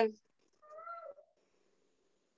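A cat meowing once, faintly and briefly, just under a second in.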